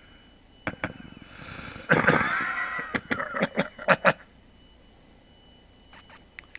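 Close-miked wordless sounds from a man: two light clicks, a loud brief vocal noise with a wavering pitch about two seconds in, then a quick run of sharp clicks and smacks.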